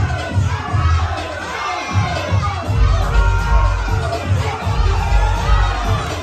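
A crowd of young spectators cheering and shouting over dance music with a pulsing bass beat.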